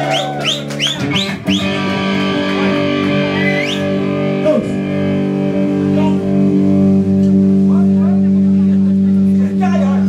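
Heavy metal band playing live on distorted electric guitar and bass: a quick repeated guitar figure, then a held chord that rings on steadily for several seconds, with a pitch slide up and one down over it.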